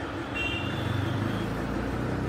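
Low steady rumble of a motor vehicle running, swelling through the middle, with a brief thin high tone about half a second in.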